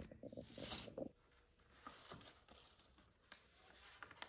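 Paper wrapping on a gift crinkling and rustling as it is handled: a cluster of quick, faint rustles in the first second, then scattered soft crinkles.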